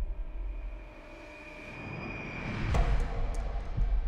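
Film soundtrack of tense music and sound design: a deep rumble under a swell that builds to a sharp hit nearly three seconds in, followed by a few faint clicks.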